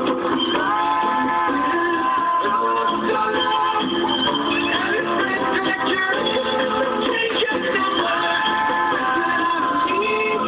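Music playing steadily, with long held tones and changing notes throughout.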